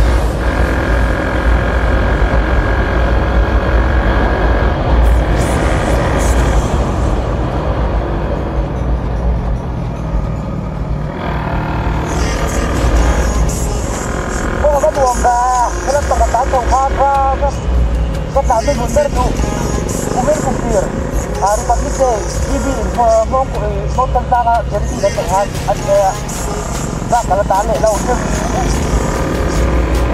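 Steady rumble of wind and engine noise from a motorcycle in motion. From about halfway through, music with a singing voice plays over it.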